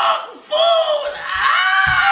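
A man screaming in a long, high-pitched wail, after a short shout at the start.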